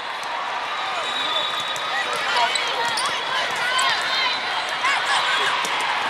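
Indoor volleyball hall din: many short sneaker squeaks on the sport court, sharp slaps of volleyballs being hit and bouncing, and a steady hubbub of voices from players and spectators.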